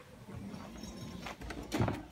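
Footsteps of people walking, with a few sharp steps in the second half.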